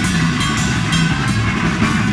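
Three-piece melodic black metal band playing live: loud distorted electric guitar over a drum kit, a dense wall of sound with no vocals.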